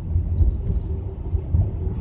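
Low, uneven rumble inside a car's cabin, heard in a pause between sentences, with a faint steady hum in the middle of it.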